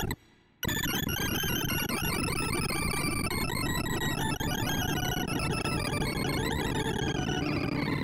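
Synthesized sorting-algorithm sonification from an array visualizer: a brief burst of tones as the 128-number array is shuffled, then after a short pause a dense, rapid cacophony of electronic beeps as Double Selection Sort runs. Each beep's pitch follows the value being accessed, so the spread of pitches narrows toward the middle as the unsorted region shrinks from both ends.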